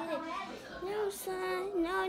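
A boy rapping in a sing-song, melodic chant: the lead vocal of the rap track, with held, gliding notes.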